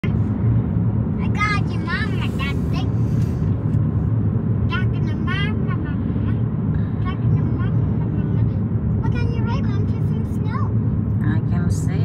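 Steady low rumble of road and engine noise inside a moving car's cabin. A few short, high-pitched vocal sounds come over it.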